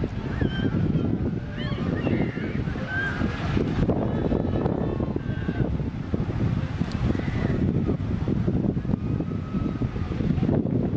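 Wind noise buffeting the microphone outdoors, with short gliding bird calls chirping above it during the first half.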